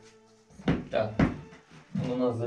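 Three sharp knocks on a workbench tabletop, about half a second to a second and a quarter in, as a smartphone is set down and multimeter test leads are picked up.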